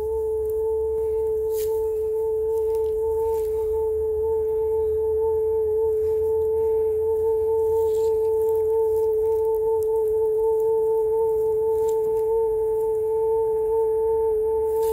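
One steady, pure held tone with a faint higher overtone. It starts suddenly and keeps the same pitch and level throughout, like a sustained musical drone.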